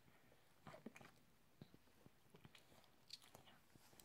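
Near silence with a few faint, short wet clicks and smacks scattered through it: a baby chewing pieces of honeydew melon.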